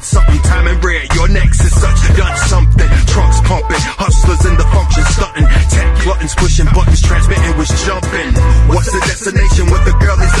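Hip hop track: a rapper's verse over a beat with heavy bass.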